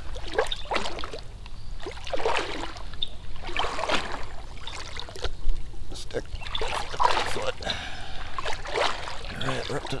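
Water sloshing and splashing around a person's legs and walking stick as they wade slowly through deep, still swamp water, in uneven strokes.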